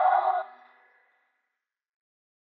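A sustained chorus of many voices cuts off abruptly about half a second in, followed by dead silence.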